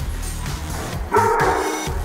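Background music with a steady low line, and a dog barking briefly just past halfway through.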